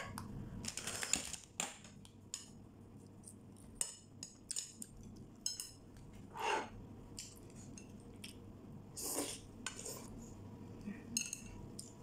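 Chopsticks tapping and scraping on ceramic plates and bowls in scattered light clicks, with a few brief soft noises between.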